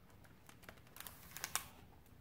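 A page of a large picture book being turned by hand: faint paper rustling and light clicks, busiest about a second in.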